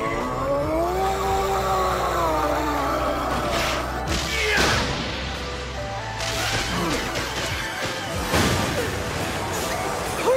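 Dramatic anime battle soundtrack: music with swooping pitch glides over the first few seconds, then whooshes and crashing impact sound effects, the sharpest hits about four seconds in and again near eight seconds.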